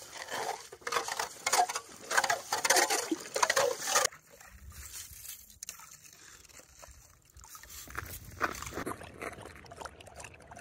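Hand ice auger pumped up and down in a freshly drilled hole in lake ice, churning and sloshing slush and ice water in loud, rough bursts that stop suddenly about four seconds in. Quieter scraping follows as the loose ice is scooped out with a slotted spoon, and near the end a dog laps water from the hole.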